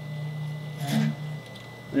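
Wire feed motor of a Lincoln Electric 256 MIG welder running with the torch trigger held, driving fresh MIG wire through the liner toward the torch. It is a steady hum that steps down about a second and a half in.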